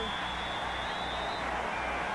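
Stadium crowd noise, steady, with one high whistle held for about a second and a half from the start: a referee's whistle blowing the play dead over a fumble pileup.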